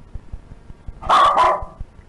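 A dog barks once, a short, loud bark about a second in.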